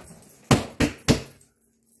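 Three quick thumps about a third of a second apart, a hand slapping the wooden box-drum seat he sits on.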